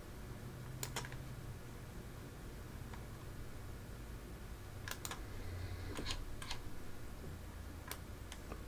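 About eight sharp, isolated clicks from operating a computer, several in quick pairs, over a faint steady low hum.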